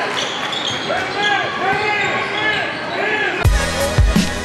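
Basketball game sound on an indoor court: a ball bouncing and players' voices, with a run of short rising-and-falling squeaks about twice a second. Near the end, hip-hop music with a heavy beat cuts in abruptly.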